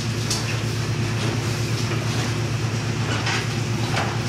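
A steady low hum under constant background noise, with a couple of brief soft rustles.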